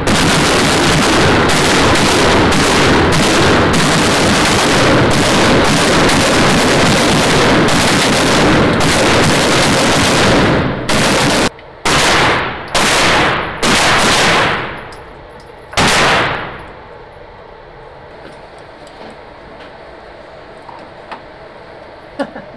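Rifle and pistol fire from several shooters on an indoor range: about ten seconds of rapid, overlapping shots, then a handful of single shots, each with a long echo. The shooting stops after about sixteen seconds.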